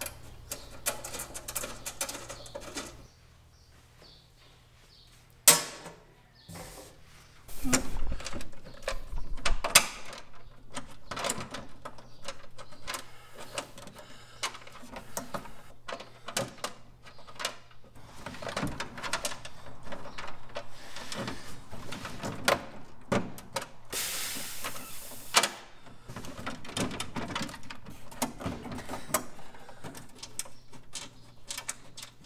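Hand-work on a heater box under a vehicle's dashboard: scattered clinks, knocks and rustles of parts and fasteners being handled. There is a sharp knock about five seconds in, a run of heavier knocks soon after, and a hissing rasp lasting over a second near the end.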